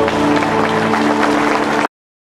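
Audience applause over held drone notes from the accompanying instruments as a Marathi stage song ends, cut off abruptly near the end.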